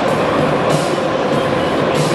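Packed stand of football supporters chanting together, loud and continuous, with a sharp surge about every second and a quarter marking the chant's beat.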